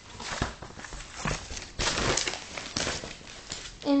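Clear plastic comic bag rustling and crinkling as it and the comic are handled, in irregular bursts with small clicks, loudest about two seconds in.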